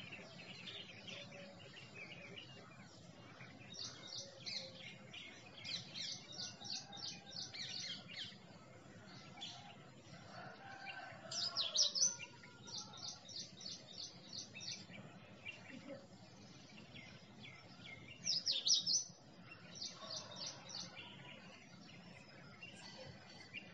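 Small birds chirping: runs of rapid, short high chirps that come and go, with two louder downward-sweeping calls, one around the middle and one a few seconds before the end.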